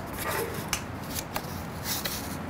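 A paper word card being handled and turned over on a table: a few light flicks and rustles of card.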